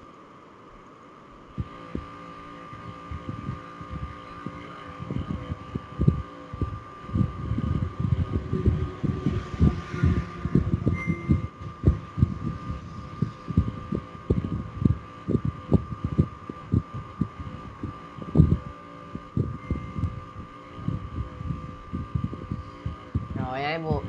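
Irregular soft low thuds, several a second, over a steady high-pitched whine.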